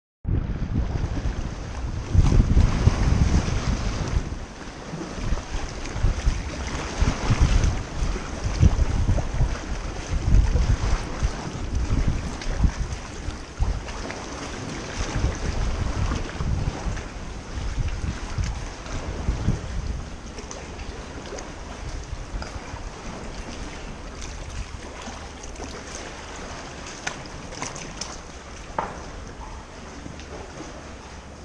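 Wind buffeting the microphone over sea water splashing and lapping around a kayak and the rocks. The gusts are heaviest in the first two-thirds and die down after about twenty seconds, leaving quieter water sounds with a few light clicks near the end.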